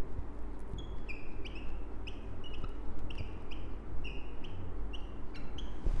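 Marker squeaking on a whiteboard while writing words: a dozen or so short, high squeaks, each about a quarter of a second, coming in an uneven run.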